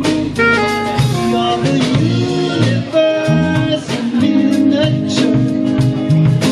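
A live band playing an instrumental passage: electric guitar and saxophones over a drum kit, with regular drum hits.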